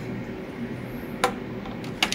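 A single sharp plastic click a little over a second in, as the contrast bottle and its spike are lifted off the top of the CT contrast injector syringe, over a steady room hum.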